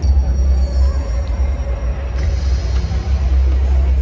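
Music with a strong, steady low bass, and a few faint high held tones that stop about halfway through.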